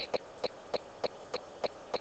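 Stylus pen tapping and clicking on a writing tablet or screen as numbers and brackets are handwritten: short, sharp clicks about three a second, one per pen stroke.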